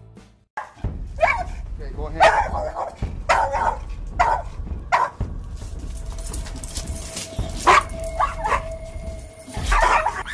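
Pit bull barking and yelping in short bursts, about eight times, with a drawn-out whine in the second half, as it lunges and pulls against its leash in an anxious state.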